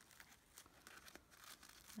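Near silence, with faint rustling of a sheer organza ribbon and a folded paper gift pocket being handled as the ribbon is crossed over.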